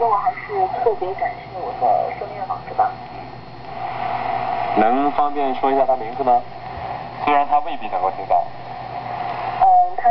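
Shortwave broadcast audio from a homebuilt WBR regenerative receiver: a voice coming through hiss and a steady whistling tone, as the regeneration control is backed off to take the set out of oscillation.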